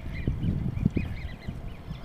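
Birds chirping: a quick string of short high calls, over low rumbling thumps of wind on the microphone.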